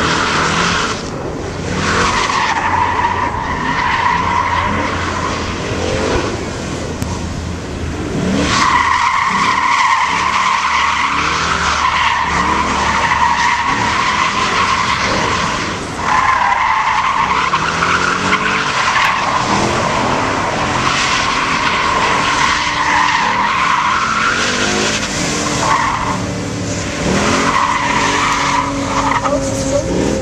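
Ford Mustang GT with a 5.0 V8 drifting: the rear tyres squeal in long spells that break off and start again several times, over the engine revving up and down.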